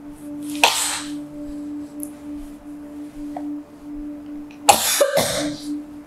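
Steady low humming drone of a film background score, broken by two short breathy noises, a brief one just under a second in and a longer, louder one near five seconds.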